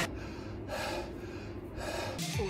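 A man breathing hard and audibly, out of breath after a long set of push-ups, with two breaths about a second apart.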